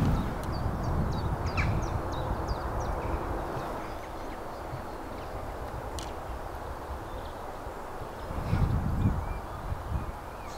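Birds calling outdoors: a quick run of short, high chirps in the first three seconds, then a few scattered calls, over a steady low background rumble. A brief low buffet hits the microphone near the end.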